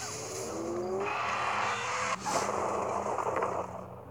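Cinematic sound effects from a video advert's soundtrack: a dense rushing noise with a rising tone in the first second, a brief break a little after two seconds, then fading near the end.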